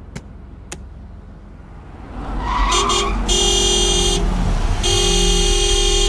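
Car horn honking three times, a short toot then two longer blasts, over a low rumble of the car running.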